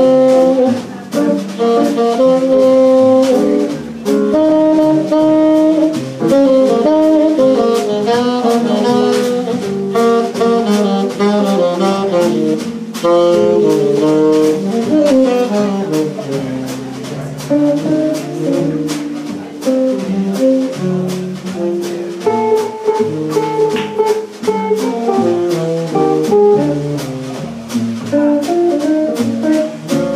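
Live jazz quartet playing: tenor saxophone out front over jazz guitar, bass and a drum kit with cymbal strokes, a continuous moving melodic line with no break.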